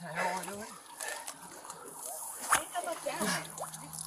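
Water sloshing and splashing around a person wading beside a half-submerged car, under faint, urgent voices. One sharp knock about two and a half seconds in, and a low steady hum near the end.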